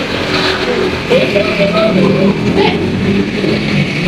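A motor vehicle's engine running loudly and steadily, its pitch wavering up and down a little.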